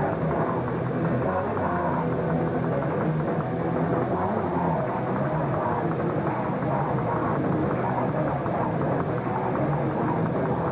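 Hardcore punk band playing live: distorted electric guitars, bass and drums with a vocalist screaming into a microphone, heard as a dense, continuous, muffled wall of sound.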